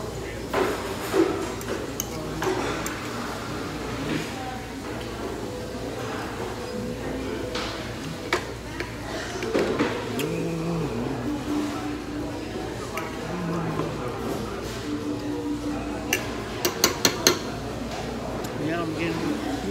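Forks clinking against ceramic plates while eating, sharp single clinks scattered through and a quick run of four or five near the end, over restaurant background voices and music.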